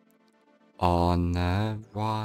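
A man's deep voice intones a long, drawn-out chant-like sound about a second in. It breaks off and resumes briefly near the end, over a faint steady musical drone.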